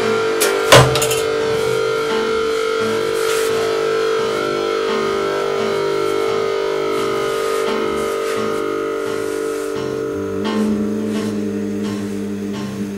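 Blues on electric guitar: a sharp struck chord about a second in, then a long sustained note held over a shifting low line, with a new lower note coming in near the end.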